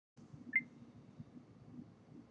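A single short, high-pitched beep about half a second in, then faint room noise.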